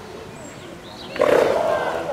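California sea lion barking once: a loud, pitched call starts just over a second in and fades within about a second.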